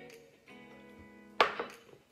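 A small glass set down hard on a tabletop: a single sharp knock with a brief ring about one and a half seconds in, over quiet background guitar music.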